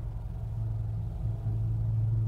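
A low, steady rumbling drone from the story's background ambience, swelling slightly about one and a half seconds in.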